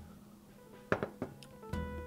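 Quiet background music, with two short knocks about a second in as a beer glass is set down on the table; the music comes up again near the end.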